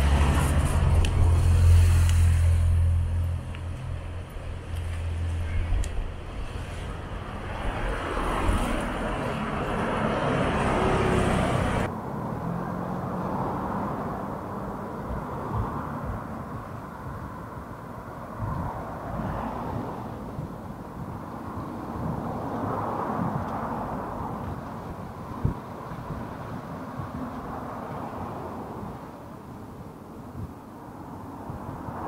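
Outdoor ambience with road traffic going by and faint voices. The sound changes abruptly about twelve seconds in, where one recording cuts to another.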